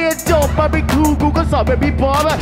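A rapper's live vocals over a hip hop beat with heavy bass; the bass comes back in about a quarter second in.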